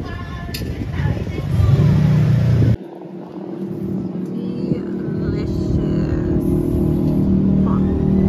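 A loud low rumble, then, after a sudden cut, a steady motor hum that holds to near the end, with faint voices behind it.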